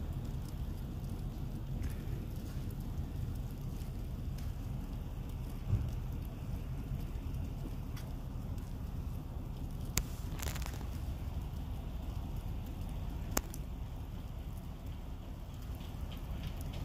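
Outdoor ambience in falling wet snow: a steady low rumble with faint crackling. There is a soft thump about six seconds in, and a few sharp clicks later on.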